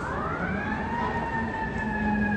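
Emergency vehicle siren winding up, its pitch rising over about a second and then holding a steady high tone.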